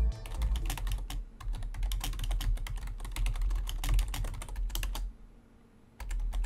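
Fast typing on a computer keyboard: a dense, irregular run of key clicks that stops about five seconds in.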